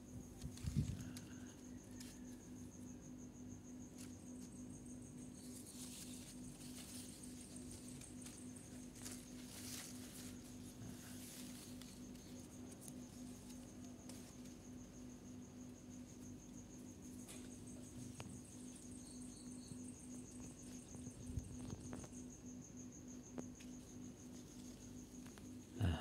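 Crickets trilling steadily in one continuous high-pitched note over a low steady hum, with a soft bump just under a second in and a few faint rustles.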